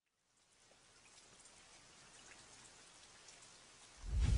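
Near silence, with a faint, even hiss fading in about half a second in and slowly growing, flecked with a few light ticks.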